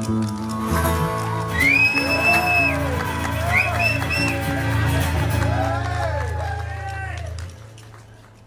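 Acoustic guitars and electric bass playing a rock 'n' roll song, with a harmonica wailing above them in long bent notes that swoop up and arch down. The band stops about seven and a half seconds in.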